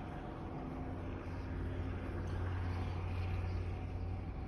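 Steady low machinery hum with a few faint, constant motor tones, in a large factory hall.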